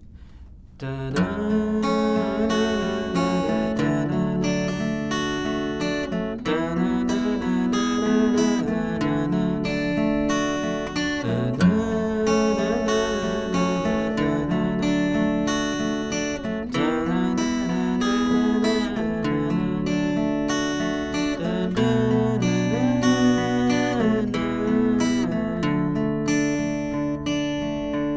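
Steel-string acoustic guitar with a capo, fingerpicked in an arpeggiated open-chord pattern. The chord changes every two seconds or so, and the playing starts about a second in.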